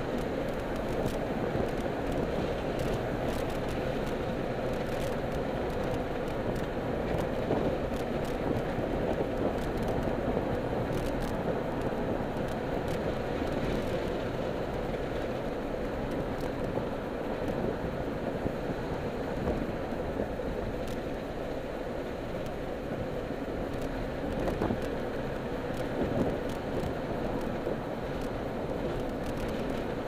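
Steady road and engine noise of a car being driven, heard from inside its cabin through a small camera microphone.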